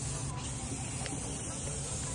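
Paint roller working black paint onto a rough concrete block wall, a steady hiss.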